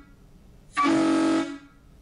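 Semi-truck air horn sounding one steady blast of just under a second, starting about three-quarters of a second in.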